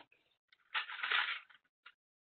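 A short rustle of hands handling paper clips and a folded-paper bridge, lasting under a second, with a couple of faint clicks either side.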